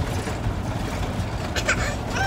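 Steady low rumble in the cabin of an RV, with a brief scratchy noise near the end.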